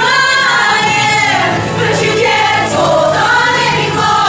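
A women's choir singing a slow song in harmony, with long held notes.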